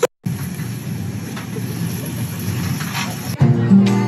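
A steady, patternless noise with a low rumble, then an abrupt cut about three and a half seconds in to acoustic guitar music.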